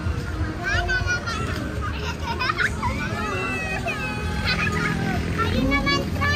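Children playing and shouting, several high-pitched young voices calling and overlapping.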